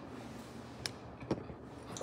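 Quiet room tone with two faint, short clicks, the first a little under a second in and the second about half a second later.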